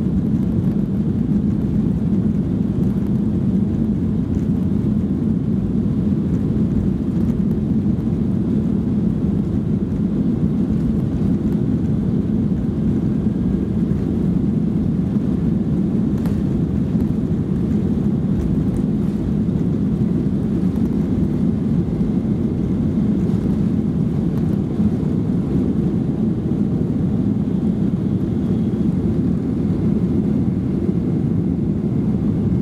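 A Boeing 737-800's CFM56 engines at takeoff power, heard inside the cabin during the takeoff roll and liftoff as a loud, steady, low noise.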